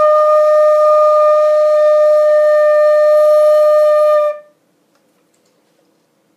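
Flute playing a single held middle D, one steady note for about four seconds that then stops.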